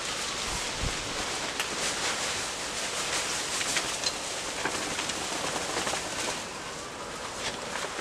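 Shredded dry leaves pouring out of a blower-vac's fabric collection bag onto a garden bed as the bag is shaken, a steady rustling hiss with faint crackles.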